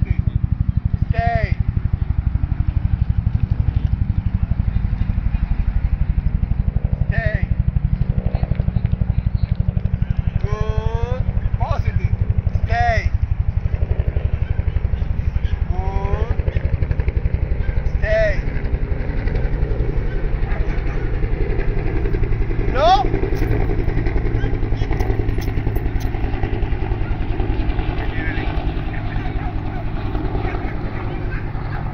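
A steady low rumble runs throughout. Short pitched calls that rise and fall in pitch break through it now and then, about seven times.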